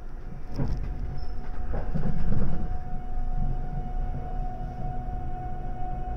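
JR West 681 series limited-express motor car pulling away from a stop, heard from inside the car. A knock and a low rumble build to their loudest about two seconds in. Then a steady whine from the VVVF inverter and traction motors sets in as the train starts to move.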